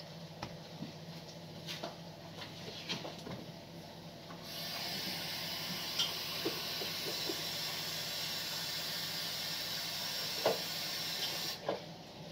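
Kitchen tap turned on about four and a half seconds in, running steadily for about seven seconds and then shut off just before the end, to rinse cucumbers. Before it come a few light clicks and knocks of vegetables and utensils being handled.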